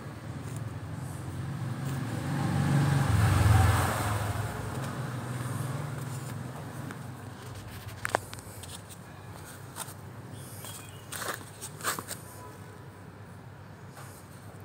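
A low rumbling noise swells and fades over the first few seconds, then a few sharp clicks and knocks as the microphone is picked up and handled.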